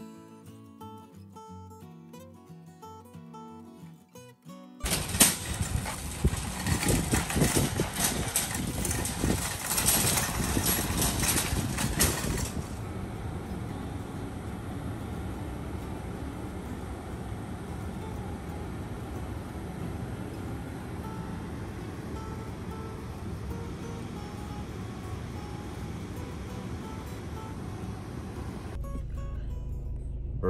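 Acoustic guitar background music for the first few seconds, then a sudden switch to steady road noise heard inside a moving car on a wet road, rougher and louder for the first several seconds before settling.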